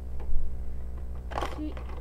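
Plastic Lego pieces knocking and clattering as part of a brick-built garage door comes apart: a knock just after the start, then a sharper clatter about one and a half seconds in.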